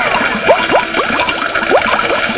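Cartoon bubbling-cauldron sound effect: a fizzing hiss with quick rising bloops, several a second, as of thick liquid boiling.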